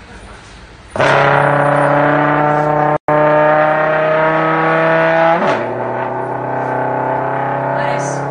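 Trombone played live, entering about a second in on one long held note, then stepping down to a lower note about halfway through and holding it. The sound cuts out for an instant near three seconds in.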